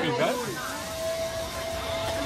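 Steam hissing in a street market, under a single steady held tone that comes in about half a second in.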